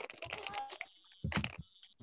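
Computer keyboard being typed on: a quick run of keystrokes through the first second, then a louder, heavier cluster a little over a second in.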